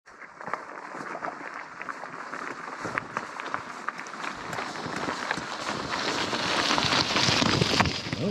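Tyres of two gravel bikes crunching and rattling over loose stones, with many small clicks of grit and pebbles, growing louder as the bikes approach.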